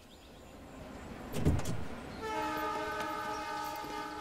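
Film score sting: a swelling whoosh, a deep boom about one and a half seconds in, then a held, horn-like chord.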